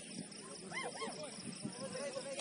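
Two short, high-pitched calls in quick succession a little under a second in, each rising and falling in pitch, heard over the steady background noise of an outdoor pitch.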